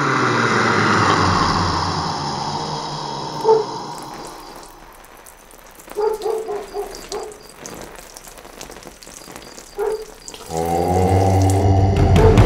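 Eerie horror soundtrack effects: a loud swelling hiss with a low hum that fades away over the first few seconds. Short pitched stings follow around six and ten seconds in, then a deep, loud droning chord enters near the end.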